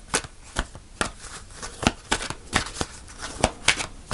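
A deck of cards being shuffled by hand, the cards snapping together in short, irregular snaps, two or three a second.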